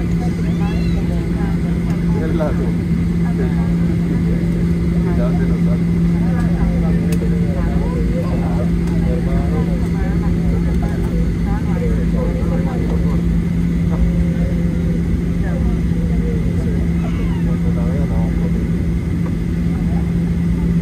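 Boeing 737-800 cabin noise: the CFM56 engines give a steady hum with a constant low tone, and indistinct voices of people talk in the cabin over it.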